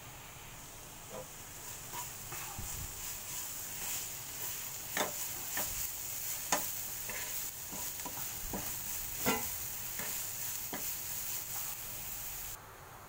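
Chopped green chillies and garlic sizzling in oil in a nonstick frying pan, stirred with a wooden spatula. The spatula scrapes and knocks against the pan a dozen or so times, mostly in the second half.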